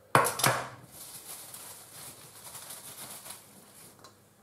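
Two quick kitchen knocks in the first half second, then a faint steady high hiss from a nonstick frying pan as a little olive oil heats in it on the stove.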